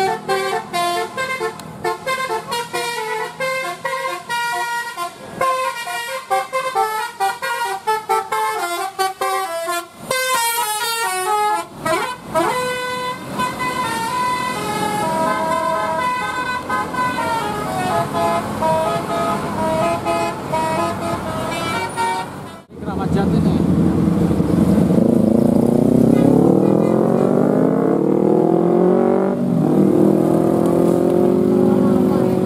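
Bus telolet horns (Basuri multi-tone horns) playing quick melodic tunes, the notes changing rapidly and then held longer. After a sudden break about three quarters of the way in, vehicle engines accelerate, rising in pitch.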